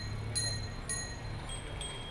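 A series of bright, high bell-like chime notes, struck one after another about every half second, each ringing on briefly. The notes shift in pitch about one and a half seconds in. A low street hum runs underneath.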